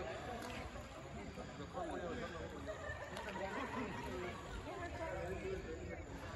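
Indistinct voices of several people talking and calling out across the water, none of it clear enough to make out.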